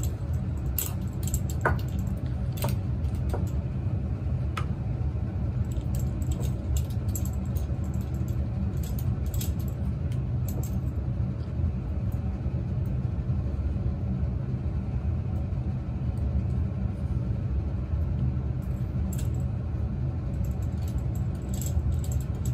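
Steady low rumble of lab ventilation, likely a fume hood's exhaust fan, with scattered light clinks and taps of a glass test tube being handled, several in the first half and a few more near the end.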